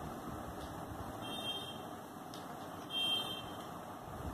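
Pen writing on paper against steady room hiss, with two brief high squeaks, about a second and a half in and about three seconds in, the second the louder.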